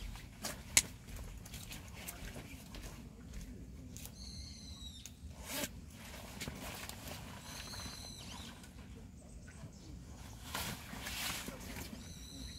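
A bird giving a short, high, slightly falling call twice, about three and a half seconds apart, over faint outdoor background. A single sharp click about a second in is the loudest sound.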